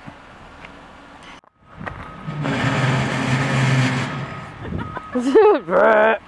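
A truck's engine run hard at steady high revs for about two seconds, with a loud hissing rush over it, then easing off. A steady high tone starts near the end.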